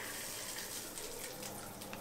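Shower water running in a steady spray.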